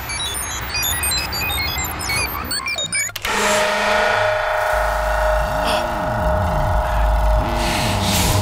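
Electronic sound-design score: scattered short, high, chime-like blips for about three seconds, then an abrupt switch to a dense sustained drone with low tones that swoop up and down in pitch over a rumble.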